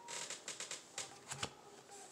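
Tarot cards being handled on a table, with a few soft taps and rustles spread across the pause.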